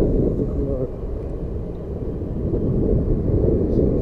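Low, steady wind rumble buffeting a helmet-mounted microphone while riding a motorbike.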